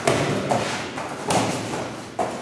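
Bare feet landing and stamping on foam training mats as fighters kick and shift their footing, giving a few dull thuds.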